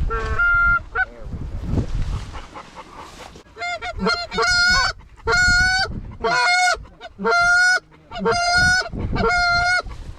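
Goose honks, most likely blown on a hunter's goose call close by: one brief call at the start, then from about three and a half seconds in a loud, evenly paced run of honks. Each honk breaks upward into a flat, held note.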